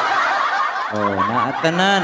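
Laughter coming through a V8 live sound card and condenser microphone: a breathy stretch, then pitched laughs bending up and down in the second half.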